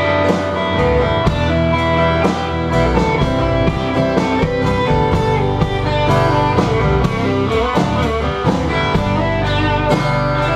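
A live band playing an instrumental passage: an electric guitar lead with bending notes over acoustic guitar, bass guitar and drum kit, in a steady country-rock groove.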